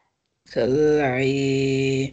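A man's voice reciting Quranic Arabic in a chanted reading, holding one long, steady-pitched word with a vowel change partway through. The sound starts about half a second in, after a moment of complete silence.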